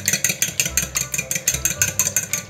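A fork beating eggs in a glass bowl, clicking rapidly against the glass at about seven strokes a second.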